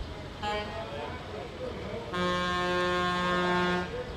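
Car horn honking: a short toot about half a second in, then a long steady blast of nearly two seconds starting about two seconds in.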